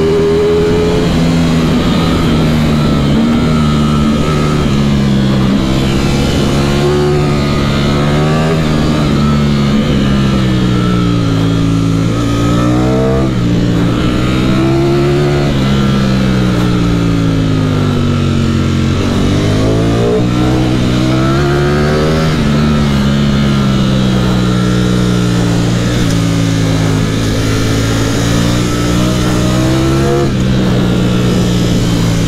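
Ducati Streetfighter V4's 1103 cc V4 engine under way at speed, heard from the rider's seat. The revs climb and fall back several times as the rider works the throttle and the gears.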